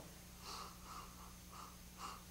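A person sniffing a glass of beer to smell its aroma: several faint, short sniffs in quick succession.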